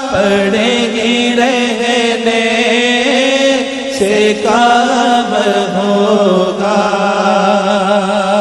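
A male voice sings an Urdu naat, a devotional song in praise of the Prophet, in long, wavering held notes. A new phrase begins about four seconds in.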